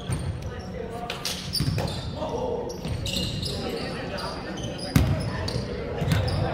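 Players' voices echoing in a large gymnasium, with a ball bouncing on the hardwood court and one sharp thud about five seconds in.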